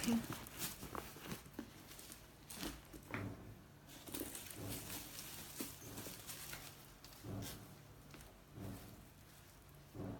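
Handling noise from a leather handbag and its tissue-paper stuffing: irregular rustling with soft knocks and taps as the bag is rummaged through and set down.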